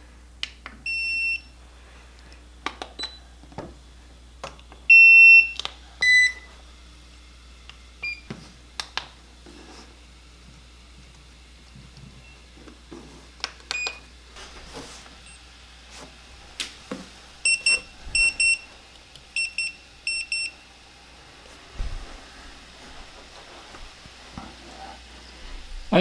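Electronic beeps from a row of portable PEM hydrogen water bottles being switched on one after another. The beeps are short and high, at a few different pitches, with a run of quick paired beeps near the end. Light clicks and taps of button presses and handling come between them.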